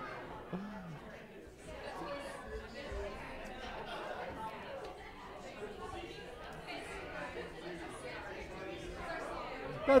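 Faint, indistinct chatter of a congregation greeting one another in a large room, with no one voice standing out.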